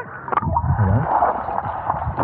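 Sea water sloshing and gurgling over a small action camera's microphone as it dips below the surface, the sound muffled underwater, with a few sharp splashy knocks.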